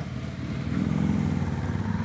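Motorcycle engine running on the road, its pitch rising a little about half a second in and then holding steady.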